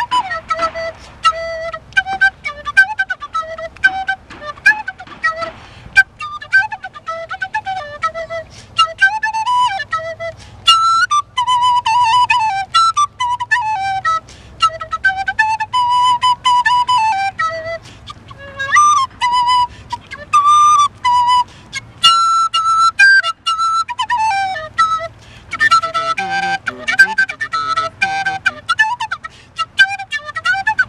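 Solo end-blown flute playing a slow melody: short separated notes at first, then longer notes that slide up and down in pitch, with a breathier, noisier passage near the end.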